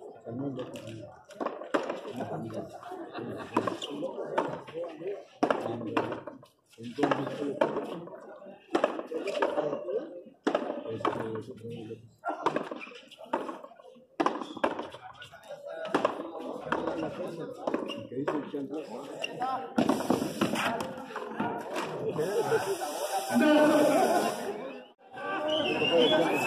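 A handball rally on a frontón: a run of sharp knocks at irregular intervals as the ball strikes the wall and the players' gloved hands.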